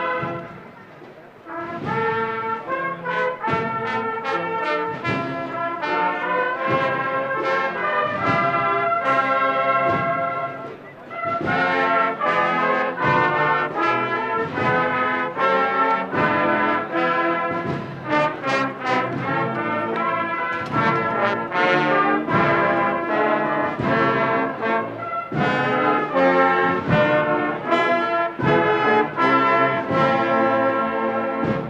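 Brass band playing a Holy Week processional march, with a short lull about a second in and another about a third of the way through.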